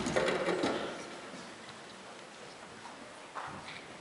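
A brief clatter of knocks and handling noise in the first second, then quieter room noise with one more single knock a little after three seconds in.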